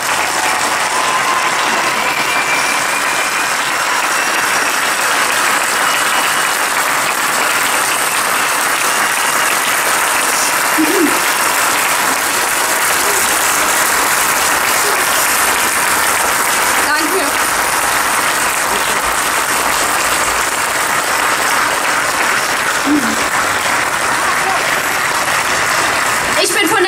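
A large outdoor crowd applauding steadily for a long stretch, with a few faint shouts mixed in.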